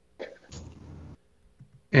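A person's brief, breathy, unpitched vocal noise, about a second long with a sharp start, of the throat-clearing or cough kind.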